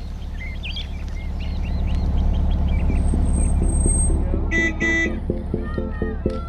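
The engine of an old Volkswagen bus running with a low rumble that grows louder, then its horn tooting twice in quick succession about four and a half seconds in.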